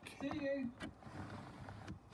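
Rear electric window motor running steadily as the door glass lowers, a low even hum, with a faint voice from a radio in the first moments.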